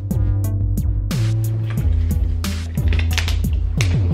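Background music: a beat of regular drum hits over heavy bass notes that slide down in pitch.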